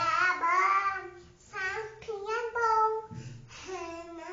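A young girl singing a praise song solo, without accompaniment, in held notes that bend in pitch with short breaks between phrases.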